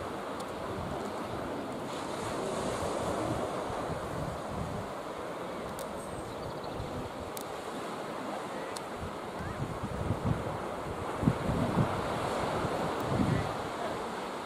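Sea waves washing onto the beach in a steady surf, with wind buffeting the microphone, the buffeting stronger in the last few seconds.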